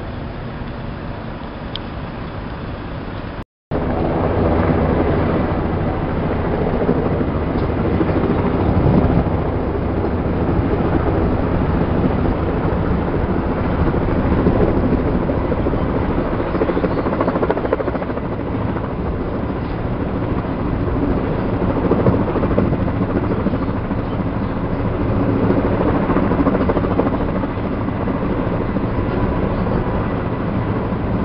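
Helicopter flying overhead, a steady drone of rotor and engine. The sound cuts out briefly about three and a half seconds in and comes back louder.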